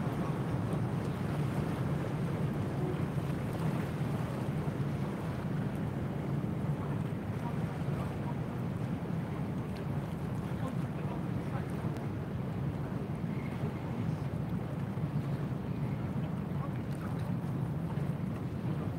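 Steady low rumble of harbour-side outdoor ambience, with no distinct events.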